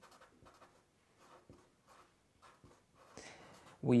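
Felt-tip marker writing a word, a run of faint, short, irregular scratching strokes.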